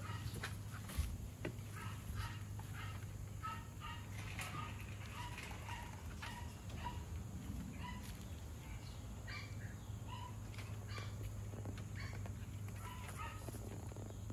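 Short bird calls repeating on and off, over a steady low hum.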